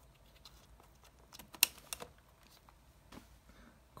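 Sharp plastic clicks and taps from the controls of a Panasonic P2 camcorder as it is switched on: a cluster of clicks about a second and a half in, the loudest of them then, and one more near three seconds, over faint room tone.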